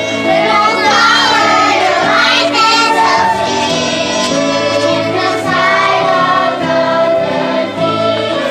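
Children's choir singing a song with instrumental accompaniment that includes violins.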